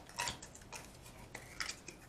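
A few light, scattered clicks and taps of small objects being handled on a desk as a small clear plastic cup is picked up.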